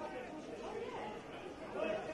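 Indistinct voices of footballers calling out across the ground, picked up by the broadcast's field microphones, with a louder call just before the end.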